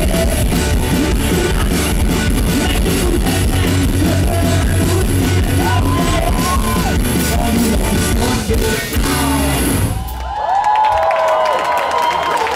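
Live rock band playing, with electric guitars, drums, keyboard and a sung vocal, ending abruptly about ten seconds in. Right after, a crowd cheers and whoops.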